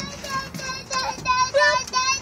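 A toddler's high-pitched voice in a quick run of short, repeated sing-song syllables, about four a second.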